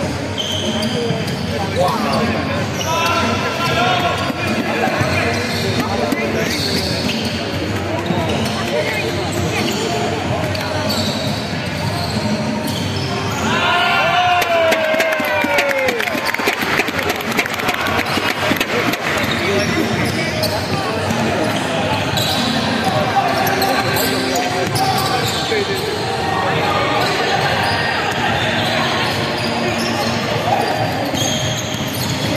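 Live indoor basketball: a ball bouncing on the hardwood court amid players' calls and spectators' voices, echoing in a large sports hall.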